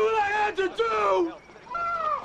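A person screaming in a high voice without words. One long cry falls in pitch and breaks off about two-thirds of the way in, and another starts just before the end.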